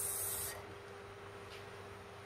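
Sliced tomatoes tipped from a small bowl onto a plate of boiled greens, a short high hiss in the first half-second, then quiet room tone with a faint steady hum.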